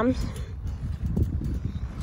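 Irregular soft thuds of bodies bouncing and rolling on a trampoline mat, over a low rumble of wind on the microphone.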